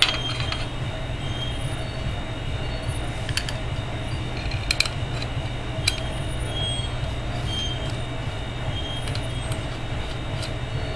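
Metal parts being handled and screwed together: an aluminium dovetail plate and tube ring giving scattered small metallic clicks and a few brief squeaks as the screws are fitted, over a steady low hum.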